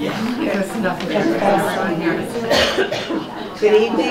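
Untranscribed speech and chatter among people in a meeting room, with a cough about two and a half seconds in.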